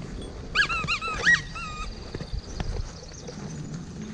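A quick series of high-pitched animal calls, about six short notes in a little over a second, the loudest near the end of the run.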